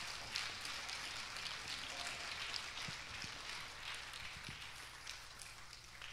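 Congregation applauding, an even patter of many hand claps that slowly dies away towards the end.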